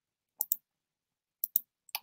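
Computer mouse clicking: two quick double-clicks about a second apart, with near silence between them, while setting up a screen share.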